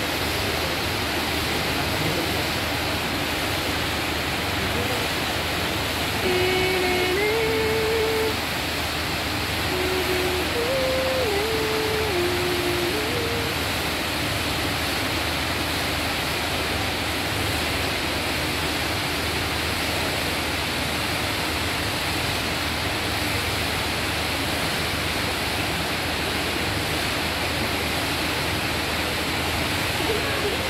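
Large indoor fountain: water from a central jet and stepped cascades splashing steadily into its pools. From about six to thirteen seconds in, a short tune of held notes, stepping up and down, is heard over the water.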